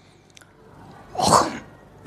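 A single sneeze from a person, about a second in: a short voiced intake followed by a sharp, noisy burst that dies away within half a second.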